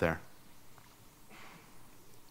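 The last word of speech ends just after the start, then quiet room tone picked up by the lectern microphone, with a faint short breathy rush about a second and a half in.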